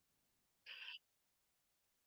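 Near silence: room tone, with one brief, faint voice-like sound just under a second in.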